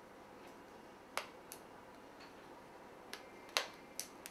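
A few sharp, light clicks from hands working a small twisted section of hair and a rubber hair band, with two clicks a third of a second apart about a second in and the loudest one past halfway.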